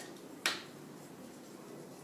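A single sharp click about half a second in, then faint room tone.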